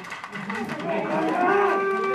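Several people's voices giving long, drawn-out calls that overlap, muffled through gas masks, one note held steady in the second half.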